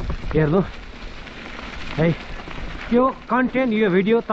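Steady rushing hiss of a mountain bike rolling along a dirt track, with a low rumble of wind on the microphone at the start. A man's voice comes in briefly near the start, again about halfway, and continuously from about three seconds in.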